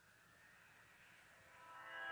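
Near silence, with a faint pitched tone swelling in over the last half second.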